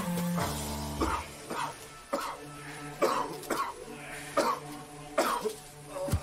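Men grappling in a fight, with short grunts and choking, cough-like breaths, about eight in all, over a tense film music score with a steady low drone.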